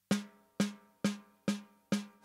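Rogers Dyna-Sonic 14x5 maple-poplar-maple wood snare drum struck softly with sticks five times, a little over two strokes a second. Each stroke rings briefly with a clear tone and the sizzle of its free-floating snare wires.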